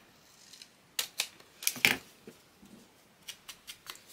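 Scissors snipping through a small piece of paper: a few sharp cuts between about one and two seconds in, the last the loudest, then a run of faint clicks near the end.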